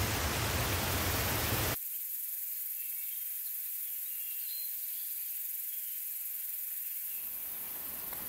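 Forest ambience: a steady hiss that cuts abruptly, about two seconds in, to a thinner, quieter hiss with a few faint high chirps, likely from insects or birds.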